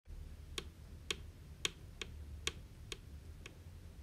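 Faint high-heel footsteps clicking on a hard floor, a doll's heeled sandals walking. About two clicks a second, evenly spaced, like a walking pace.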